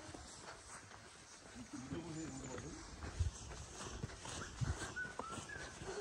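Footsteps of people jogging on a dirt forest trail, with a few soft thuds and faint voices.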